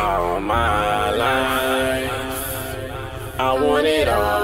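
A break in a hip hop song: the drums and heavy bass drop out, leaving held, layered sung vocal notes with a few sliding pitches. It swells again near the end.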